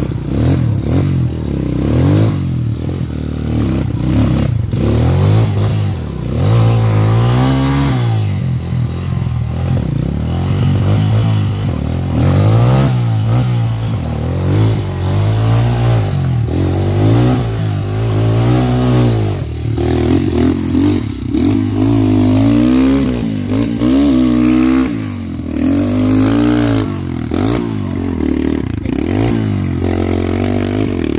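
Rusi trail motorcycle engine revved hard again and again under load, its pitch rising and falling every second or two, as the bike is worked up a steep rutted clay climb. Clatter and scraping from the bike in the rut come in between.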